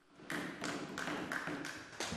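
A faint, dense patter of light taps and soft thumps, with no voice.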